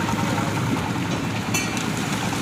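Fishing boat engine running steadily at a low, even rumble. A brief high-pitched sound cuts across it about one and a half seconds in.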